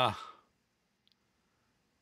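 A man's voice trailing off, then near silence with a single faint click about a second in.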